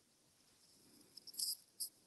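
Near silence, broken about a second and a half in by two short, faint, hissy clicks.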